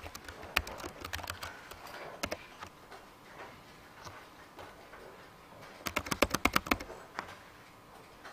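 Keystrokes on a computer keyboard as a digit and Enter are typed again and again: scattered taps for the first couple of seconds, then a quick run of about a dozen keys a little before the end.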